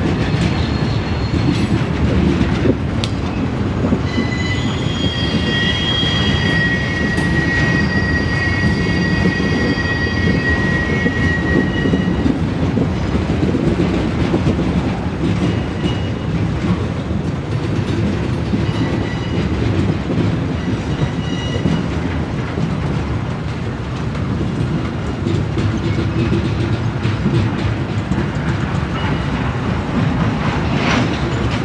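Norfolk Southern work train cars rolling past, with a steady rumble and the click of wheels over rail joints. High wheel squeal rings out from about four to twelve seconds in.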